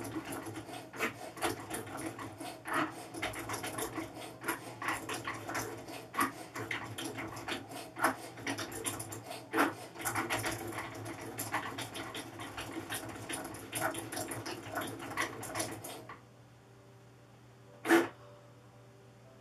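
Cricut Maker 3 cutting machine running a test cut on Smart Vinyl: the carriage motors whir and click rapidly as the blade moves back and forth. The machine stops about sixteen seconds in, and a single sharp click follows near the end.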